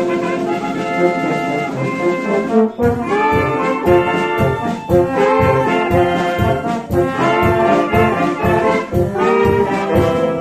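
A wind band with clarinets, flute, saxophones and brass plays sustained chords. About three seconds in, the drum kit comes in with a steady beat.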